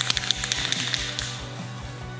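Aerosol spray paint can being shaken, its mixing ball rattling in a quick run of sharp clicks for about a second, then fading.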